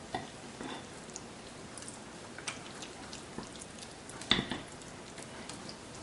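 A spatula stirring thick, wet fritter batter in a bowl: soft scraping and small clicks, with one louder knock against the bowl about four seconds in, over a faint steady hiss.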